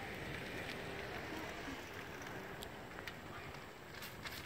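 Quiet outdoor background: a steady low rushing noise with a few faint ticks.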